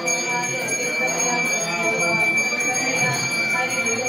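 Temple bells ringing continuously during an aarti, with voices chanting or singing underneath.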